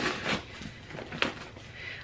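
A small blade slitting packing tape on a cardboard box: a scraping sound that fades about half a second in, then fainter scratches on the cardboard and a small click a little over a second in.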